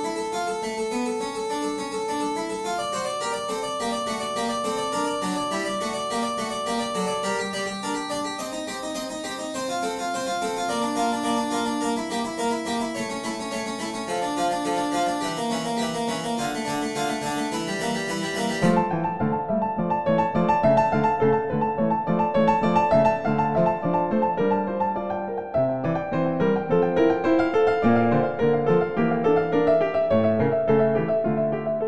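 Pianoteq 6's modelled H. Ruckers II harpsichord played from a digital piano keyboard: a bright, plucked-string line of running notes. About two-thirds of the way through, the sound switches abruptly to a duller-toned keyboard patch with the brightness gone, played as repeated rhythmic chords.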